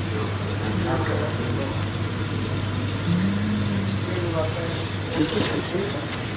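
Steady low hum of aquarium equipment such as air pumps and filters, with faint indistinct voices in the background.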